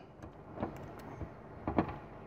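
Plastic LEGO pieces being worked by hand as someone tries to pry apart stuck Technic parts: faint handling noise with a few small clicks, the clearest near the end.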